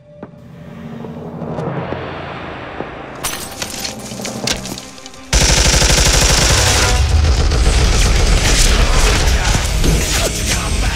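Music builds up, then about five seconds in a loud, very rapid burst of submachine-gun fire breaks out and keeps going.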